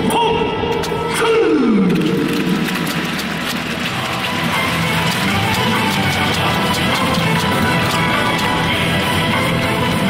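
Music played over a stadium's loudspeakers. About a second in, a sliding drop in pitch leads into a dense, full track.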